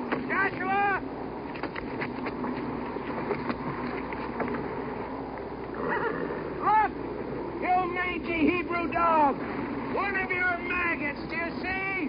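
Several voices shouting and yelling in short rising-and-falling cries over a steady rumble of a film battle scene, with a few sharp knocks early on and the cries thickest in the second half.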